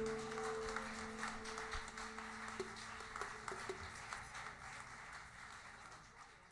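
The last held notes of an Arabic orchestra ring out and fade as a song ends, under faint audience applause that slowly dies away.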